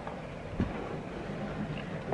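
Steady low background rumble of room noise, with one faint knock about half a second in.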